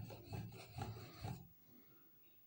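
A steel blade being sharpened on a wet fine-grit whetstone: rhythmic scraping strokes back and forth, about two and a half a second, that stop about a second and a half in.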